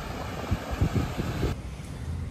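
Low, uneven rumble of wind buffeting a phone microphone outdoors, with irregular low bumps. About one and a half seconds in, the background cuts abruptly to a quieter, duller one.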